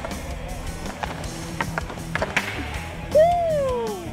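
Ice skate blades scraping and hockey sticks clicking on a puck during a passing drill, over background music. Near the end a loud pitched sound rises briefly and then slides down in pitch for most of a second.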